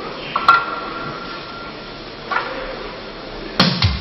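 Rock band starting a song near the end: drum-kit strikes and electric guitar come in together. Earlier, a click is followed by a single held high tone for about a second.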